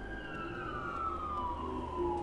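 A siren wailing in the background, its single tone sliding slowly down in pitch.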